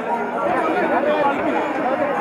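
A large crowd of spectators chattering, many voices overlapping in a steady babble.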